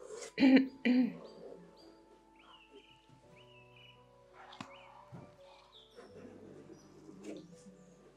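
Calm background music of sustained soft tones with birdsong chirps woven into the track. Two short bursts of a person's voice stand out in the first second.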